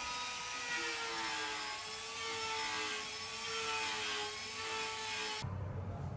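Electric power carving tool running on ice with a steady, slightly wavering high motor whine and a grinding hiss. The whine cuts off suddenly near the end.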